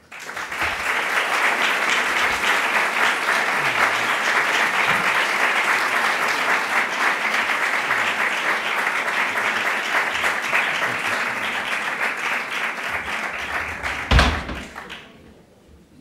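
Audience applauding steadily for about fourteen seconds, then dying away. A single loud thump near the end is the loudest sound.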